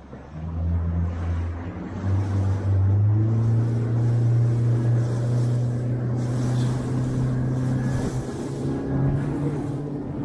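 Motorboat engine running steadily as the boat cruises, with a low hum under wind and water noise; it grows louder about three seconds in and holds there.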